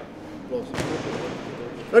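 Indistinct chatter of men standing close by, with a single sharp thump a little under a second in.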